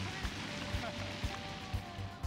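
Spectators applauding after a holed shot, the applause fading toward the end, over background music with a steady beat of about three thuds a second.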